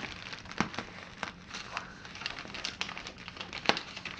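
Inflated plastic packing air pillows crinkling and crackling as they are handled and pressed into place, a scatter of irregular sharp clicks.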